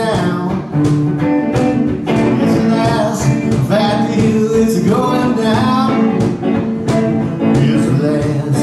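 Solo blues guitar played steadily, with a bending melody line above it.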